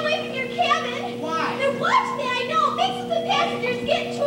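Actors' voices in stage dialogue, unamplified and heard from far back in the theatre, the words unclear. A steady hum runs underneath.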